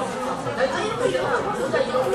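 Chatter of many people talking at once, with overlapping voices and no single speaker standing out.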